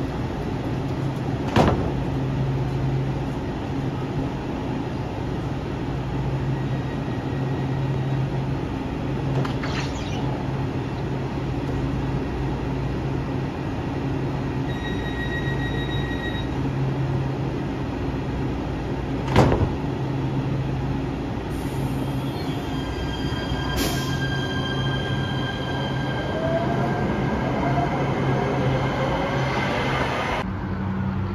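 An LA Metro Kinkisharyo P3010 light-rail train standing at the platform with its doors open, its onboard equipment giving a steady low hum. Two sharp clanks come about a second and a half in and about twenty seconds in, and short high beeps sound twice. In the last several seconds steady high tones and gliding whines join the hum.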